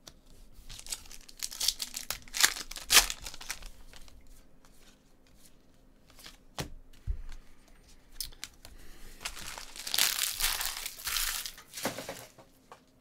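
Foil pack of 2019 Panini Contenders football cards being torn open, crinkling loudly in bursts about one to three seconds in. A few light clicks follow as the cards are handled, then another stretch of crinkling near the end.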